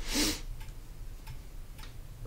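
A few faint, spaced clicks of computer keyboard keys, after a brief hiss near the start.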